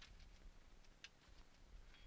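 Near silence: faint low background rumble with a few soft clicks.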